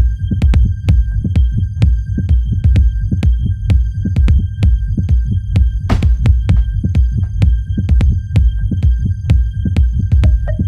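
Tech house DJ mix: a heavy, throbbing bass line under quick, regular clicking percussion and a thin steady high tone, with a brief noisy swell about six seconds in.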